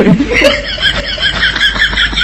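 High-pitched, rapid laugh sound effect: a string of short giggles at about four to five a second, inserted as a comic laugh cue after a joke's punchline.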